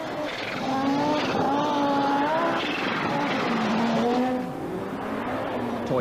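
Audi Sport Quattro rally car's turbocharged five-cylinder engine running hard at high revs. Its pitch steps down once about halfway through, then the sound fades somewhat near the end.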